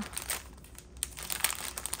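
Clear plastic bag of paper ephemera pieces crinkling as it is handled and turned over in the hands, light crackles that grow busier about a second in.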